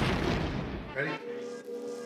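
An explosion-style sound effect hits at the very start and fades out over about a second, under background music.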